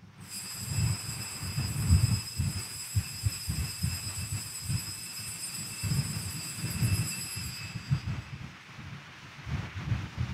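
Altar bells ringing at the elevation of the host after the words of consecration: a steady, high ringing that fades out about eight seconds in, over a faint low rumble.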